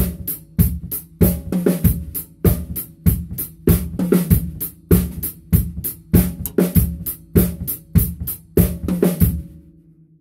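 Acoustic drum kit played in a steady groove: a strong low drum hit about every two thirds of a second with lighter, crisper strokes in between. The playing stops just before the end.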